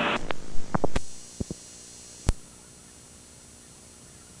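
The recording cutting off, with a few clicks in the first second, then a steady low electrical hum with faint high whistling tones from blank videotape, broken by one sharp click a little after two seconds.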